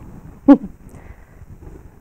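A woman's brief vocal sound, falling in pitch, about half a second in, over faint handling noise as thread is passed through the lower eyelet of a bobbin winder's tension assembly.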